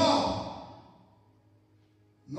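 A man's voice through a handheld microphone trailing off into a breathy sigh, fading out over about a second.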